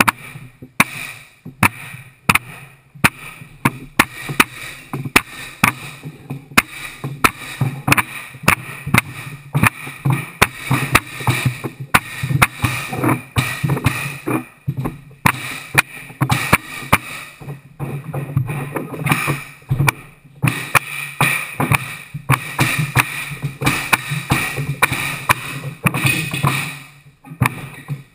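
Pneumatic hardwood flooring nailer struck again and again with a mallet, each blow a sharp crack as it drives a fastener into the floorboards, about one to two strikes a second in runs. A steady low hum runs underneath.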